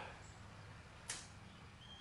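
Near silence: faint room tone with one short click about a second in.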